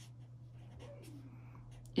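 Marker writing on paper: a few short, faint scratchy strokes as a word is written.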